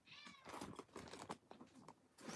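Near silence, with one faint, brief high-pitched call that rises and falls in pitch near the start.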